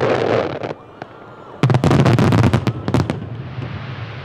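Fireworks display: a burst of bangs and crackling at the start, then after a short lull a dense volley of sharp bangs for about a second and a half as gold aerial shells and fan-shaped fountains go off together, dying away into a rolling rumble.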